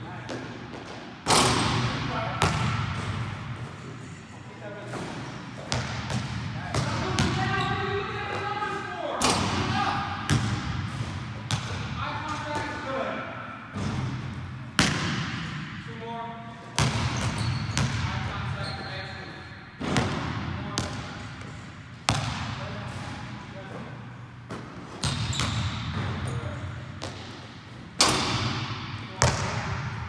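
A basketball bouncing on a hardwood gym floor: single sharp bangs every two to three seconds, each echoing through the large hall.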